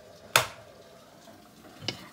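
A sharp click from an electric stove's control knob being turned off, with a second, fainter click near the end.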